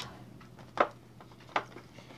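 Two short, sharp clicks from a Funko Pop's cardboard box being handled and opened, the first about a second in and louder, the second near the end.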